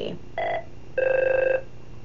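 Telephone's electronic ringer signalling an incoming call: a brief tone about a third of a second in, then a rapidly warbling ring lasting about half a second.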